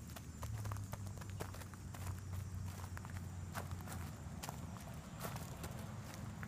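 Footsteps crunching on loose wood-chip mulch, irregular crackles a few times a second.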